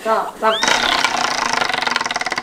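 Tabletop prize wheel spun by hand, its plastic flapper clicking rapidly over the rim pegs in a fast, even run of ticks that starts about half a second in. A girl's voice rises in a squeal just before the clicking.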